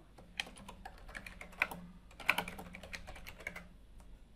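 Typing on a computer keyboard: a quick run of key clicks lasting about three seconds as a short sentence is typed and sent.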